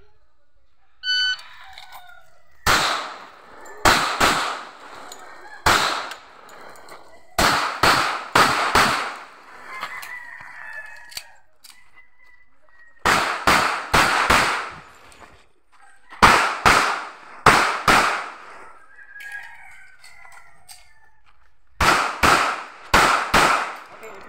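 An electronic shot timer beeps once about a second in, then a pistol is fired about twenty times in five quick groups of double taps and short strings.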